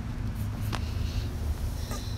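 Low wind rumble on the microphone, with a single sharp click about three-quarters of a second in.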